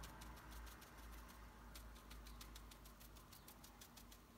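Faint, quick ticks of a watercolour brush dabbing paint onto paper, several a second and irregularly spaced.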